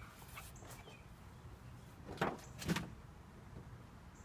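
Poster board handled as a sign is swapped, giving two brief rustles about half a second apart, a little past the middle, over a low outdoor background.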